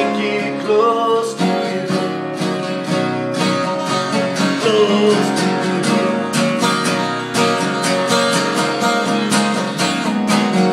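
Acoustic guitar strummed in a steady, even rhythm: an instrumental stretch of a song, without vocals.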